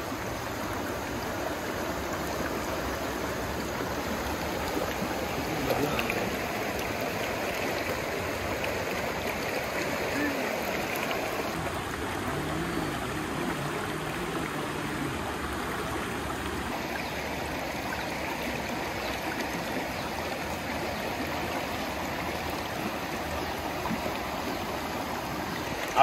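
Fast-flowing river rushing over rocks: a steady, unbroken sound of running water.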